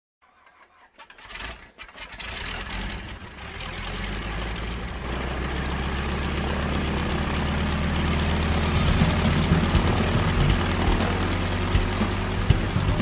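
An engine starting up: a few sharp clicks and sputters, then it catches and runs with a steady low drone, growing louder.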